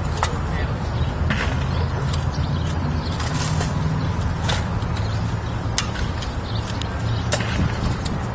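Shovels scraping and striking into moist dirt and brick rubble, in short irregular strokes several seconds apart, over a steady low rumble.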